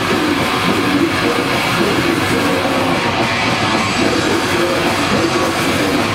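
Death metal band playing live: distorted electric guitars and drums in a dense, steady wall of sound.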